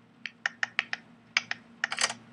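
A quick, uneven run of sharp clicks, about nine in under two seconds, made while writing the next heading.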